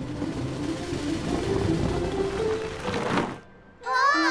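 Cartoon sound effect of a tyre rolling away across pavement: a rumbling noise with a tone that rises in steps, over background music. It cuts off about three and a half seconds in.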